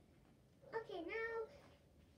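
A single meow lasting under a second, starting about two-thirds of a second in, its pitch dipping and rising again.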